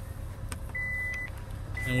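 Power liftgate warning chime on a 2018 Kia Sorento: two steady high beeps about half a second long and a second apart, which signal that the liftgate has been set to close at the press of its button. A click comes before the beeps.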